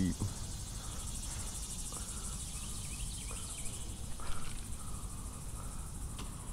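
Insect chorus: a steady, finely pulsing high buzz that eases a little about midway. Faint bird chirps come through above it.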